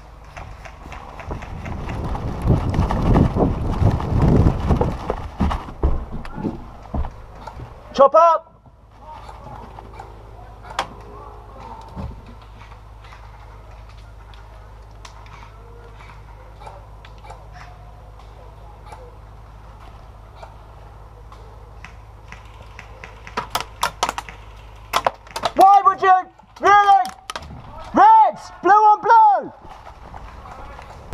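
Movement noise on an airsoft player's body-worn camera, with rustling and footfalls in the first few seconds. Near the end come a quick cluster of sharp clicks, then a voice calling out five or six short rising-and-falling cries in quick succession.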